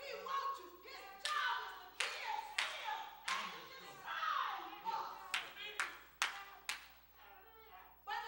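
Several sharp hand claps at uneven intervals, mixed with bursts of a raised, preaching voice.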